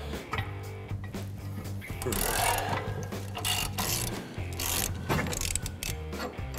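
A hand ratchet on an 18 mm socket clicking in runs of quick ticks as it backs out a rear suspension lateral-arm bolt, over steady background music.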